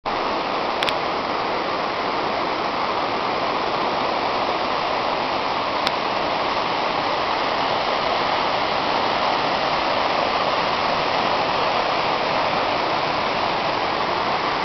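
A fast-flowing creek rushing over rocks, a steady even rush of water, with two faint clicks, one about a second in and one near the middle.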